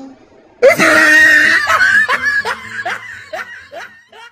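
A person laughing: a sudden loud outburst about half a second in, then a string of short 'ha' bursts, two or three a second, dying away toward the end.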